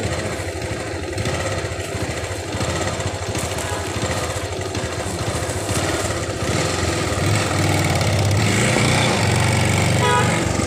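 Small two-wheeler engine running while riding at low speed, with road and wind noise. It gets louder about seven seconds in.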